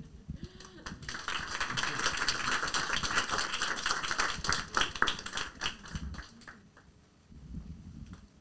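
Audience applauding, starting about a second in and dying away after about six seconds.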